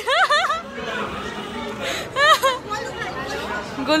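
Voices in a room: a high-pitched young child's voice calling out near the start and again about two seconds in, over background chatter.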